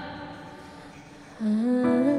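Female solo vocal ballad over a quiet accompaniment: the preceding phrase dies away into a soft lull, then a low held note is sung in about one and a half seconds in, wavering slightly.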